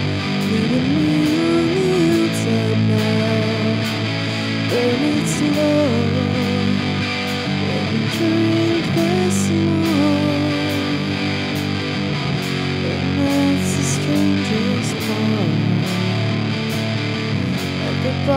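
Live rock band playing an instrumental passage: an electric guitar lead with bending, gliding notes over bass guitar and a drum kit with cymbals.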